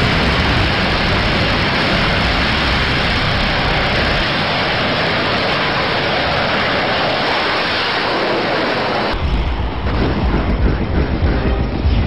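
Rocket motor firing on its launch tower: a loud, steady roar of exhaust. About nine seconds in it gives way abruptly to a deeper rumble that rises and falls in loudness.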